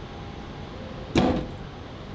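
A single sharp clunk about a second in, as a handheld fire extinguisher is taken out of its metal holder in a wall cabinet, over a steady background hum.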